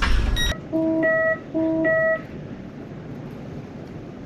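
Electronic two-note rising chime, low note then one an octave higher, sounded twice in quick succession, the calling tone of a train's passenger help-point intercom that goes unanswered.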